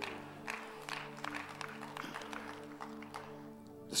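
Soft background music of held, sustained keyboard chords, with a few faint, scattered claps.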